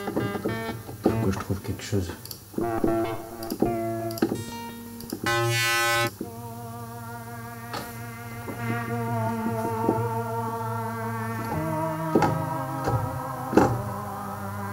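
Presets of Logic Pro's Alchemy software synthesizer being auditioned from a keyboard. A few short notes come first, then a bright held chord about five seconds in, then sustained pad notes with a wavering shimmer.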